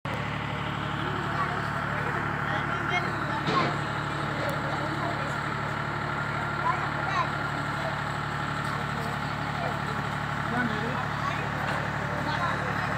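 A steady, unchanging engine-like hum, with faint voices talking over it.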